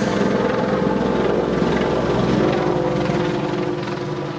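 A loud, steady mechanical running noise with a low hum and a fast flutter, coming straight after a tune on the organ has ended.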